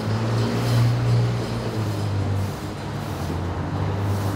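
City street traffic noise: a steady rush of passing vehicles over a strong low engine hum.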